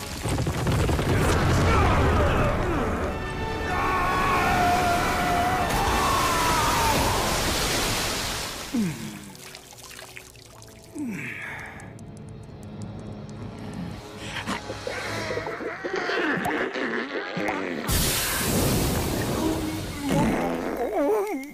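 Dramatic film score over a deep rumble, loud for the first half and quieter in the middle, then a sudden loud surge of sound near the end.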